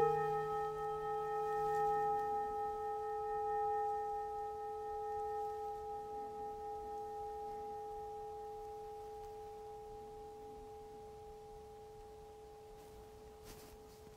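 Hand-held metal singing bowl struck once with a mallet, then ringing on in a clear, slowly wavering tone that gradually dies away.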